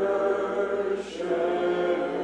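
Congregation singing a hymn a cappella in parts, holding long notes, with a brief break for a sung consonant about a second in.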